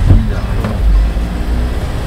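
Engine and road noise inside the cab of a moving Kia manual-gearbox truck: a steady low rumble.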